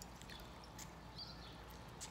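Faint dripping and trickling of a small craft sponge being dipped and squeezed in a bowl of water, over a low steady hum.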